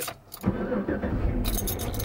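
Car engine starting about half a second in, then running with a steady low rumble, heard from inside the cabin, with keys jangling.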